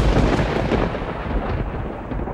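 A thunderclap that breaks suddenly and rolls on in a deep, steady rumble.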